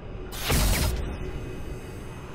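Logo-reveal sound effect: one short mechanical-sounding hit, like a ratchet or latch clicking shut, about half a second in, fading out into a low tail.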